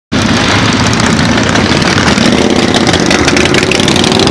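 A group of cruiser motorcycles riding past at low speed, many engines running together in a loud, steady mass.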